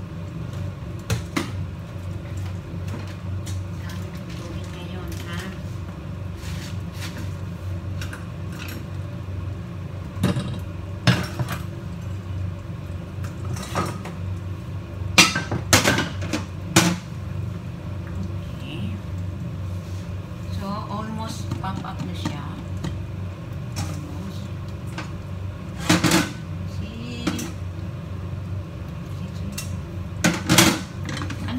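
Metal pots and pans clinking and clanking on a gas stovetop, in scattered knocks, with the loudest clanks about fifteen to seventeen seconds in and again around twenty-six seconds, over a steady low hum.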